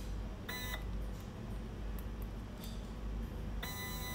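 Small stepping motor on a positioning stage jogging under a Vexta SG8030J pulse controller, running with a steady whine at its set jog speed: a short burst about half a second in, then a longer run of about a second near the end. Faint clicks of the controller's buttons fall in between.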